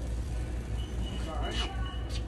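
Steady low hum in a big-box hardware store, with faint, indistinct talk.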